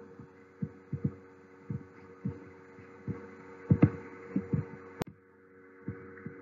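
Soft, irregular low thumps, about nine of them, over a faint steady electrical hum, with one sharp click about five seconds in.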